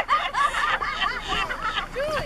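People laughing in a quick run of short bursts of rising and falling pitch.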